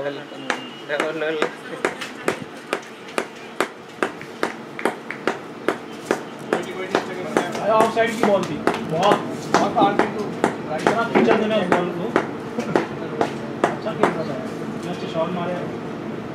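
People talking, with more voices joining about halfway through. Under the voices runs a steady series of sharp taps, about two a second.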